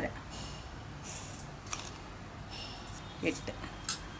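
Granulated sugar pouring into a stainless-steel mixer-grinder jar: a few short, hissing rattles of granules hitting the metal, with a light click near the end.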